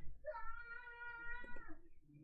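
A cat giving one long, drawn-out meow, fairly faint.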